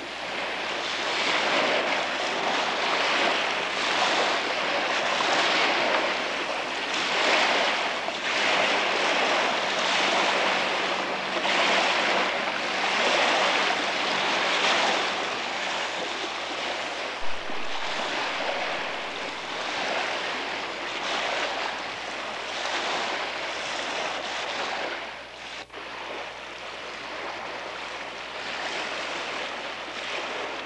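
Choppy lake water splashing and rushing, in swells every second or two, with wind buffeting the microphone; it eases a little near the end.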